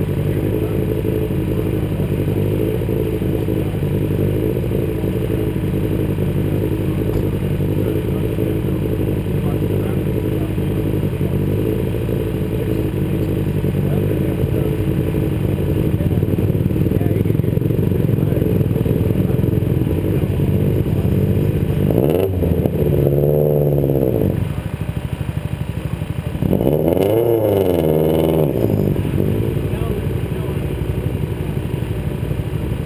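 Car engine idling steadily close by, then two short stretches of engine revs rising and falling in pitch in the last third.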